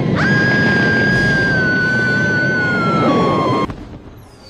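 Film soundtrack of a blaze: a loud, dense rushing roar of fire under dramatic music, with one high held tone that sinks slowly in pitch, steps lower near the end and cuts off abruptly along with the roar just before the end.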